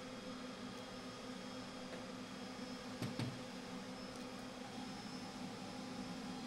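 Steady low hum and hiss of cooling fans in a projection booth, with one faint knock about three seconds in from the 3D filter unit being handled.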